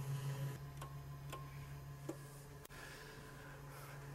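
Van de Graaff generator running with a steady low hum. A few faint sharp clicks fall in the middle, the sharpest a little before three seconds in.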